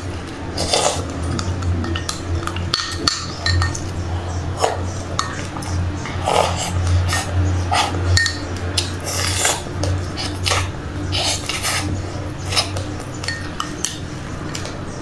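A plastic spoon scrapes and clinks repeatedly in a glass cup, mixed with crisp crunching as frozen passionfruit and sesame seeds are chewed, over a steady low hum.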